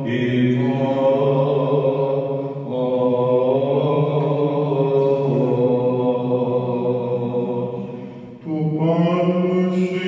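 Greek Orthodox Byzantine chant: male voices singing slow, drawn-out phrases over a steady low held note. A short break comes near the end before a new phrase starts, rising in pitch.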